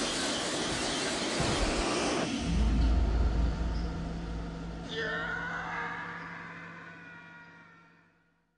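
Horror-trailer sound design: a dense noisy rush, then a deep low boom, then a ringing chord that comes in about five seconds in and fades out to silence.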